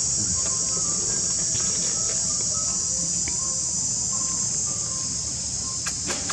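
Steady, high-pitched insect chorus droning without a break.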